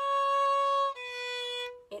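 Violin playing two bowed notes on the A string, each held almost a second: first a C sharp with the second finger high (a high two), then a slightly lower, quieter C natural with the second finger snuggled next to the first (a low two).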